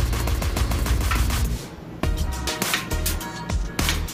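Background music with a heavy bass line and sharp, evenly spaced percussive beats; the music briefly drops away just before halfway, then comes back in.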